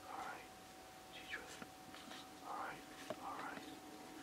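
Pokémon trading cards slid and flipped one past another in the hands: a few soft swishes of card on card with faint clicks of the edges.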